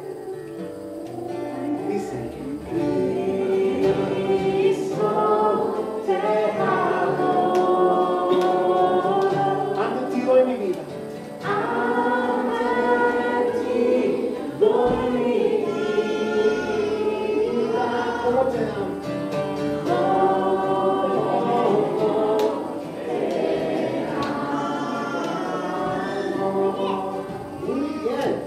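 A group of children and adults singing a worship song together, with a brief pause about ten seconds in.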